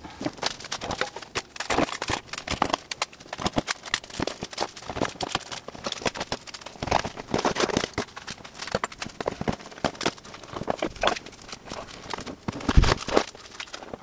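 Rapid, irregular clatter and knocking of equipment cases and gear being handled and set down while an SUV's cargo area is unloaded.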